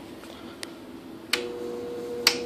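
A Heathkit SB-220 linear amplifier being switched on: a sharp click a little past halfway, after which a steady hum from the amplifier and its cooling fan starts and holds, with the 3-500Z tube's filament lighting. A faint tick comes shortly before the click.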